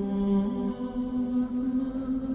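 Wordless background music of sustained, chant-like vocal notes, with a change of notes under a second in.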